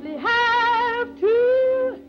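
A woman singing two long, high held notes with vibrato, the first from about a quarter second in and the second from just past one second, over a steady held note of accompaniment. It is the sound of a 1930s film soundtrack recording.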